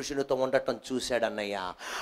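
A man preaching in Telugu through a microphone, speaking in short emphatic bursts, with one long drawn-out syllable falling in pitch near the end.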